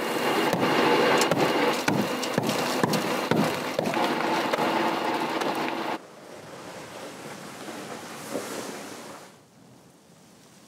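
Hammers striking and chipping away at a moulded relief on a wall, many irregular sharp knocks over a noisy background. About six seconds in, the sound drops abruptly to a much quieter, steady outdoor hiss that fades near the end.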